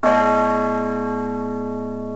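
One stroke of a large church bell, struck once and then ringing on with a deep hum, slowly dying away.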